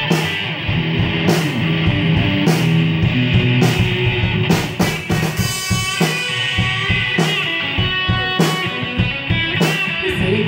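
Live rock band playing an instrumental passage: amplified electric guitars over a drum kit, with a cymbal or drum accent about once a second.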